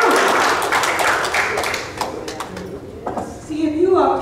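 Congregation applauding by hand; the applause dies down over the first two seconds to a few scattered single claps.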